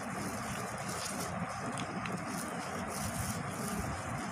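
Steady low background rumble with no clear pitch, and a couple of faint ticks about one and two seconds in.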